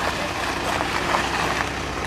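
Volkswagen ambulance van's engine running at idle, a steady noise with outdoor background hiss.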